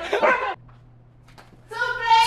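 A dog whining and yipping among laughter, cut off abruptly about half a second in. Near the end a person's voice starts in long, drawn-out calls.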